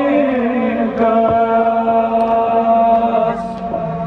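Kashmiri noha, a Shia mourning lament, chanted with long, drawn-out held notes.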